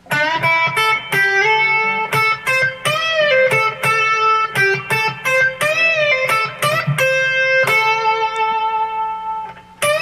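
Electric guitar playing a single-note pentatonic lead phrase: picked notes, with full-step string bends on the high E that rise and are released back down, and a longer held note near the end.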